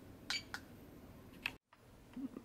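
Three faint, sharp clicks as the metal push button on a handheld F3K contest stopwatch is pressed to cycle through its stored flight times.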